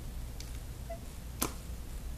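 A plastic loom hook working rubber bands over the plastic pegs of a Rainbow Loom, with a faint tick and then one sharp click about a second and a half in, over a steady low hum.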